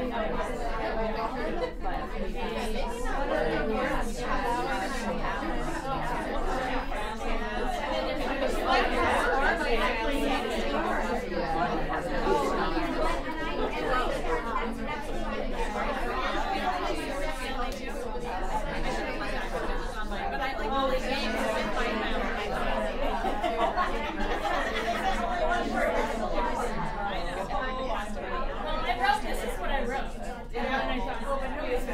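Many people talking at once in pairs and small groups: a steady babble of overlapping conversations with no single voice standing out.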